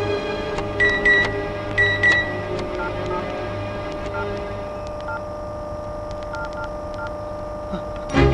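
Mobile phone keypad beeping as a number is dialled: a string of short two-tone beeps, about seven of them, beginning about three seconds in, with faint key clicks. A low steady drone and musical tones of the film score lie underneath, louder in the first two seconds.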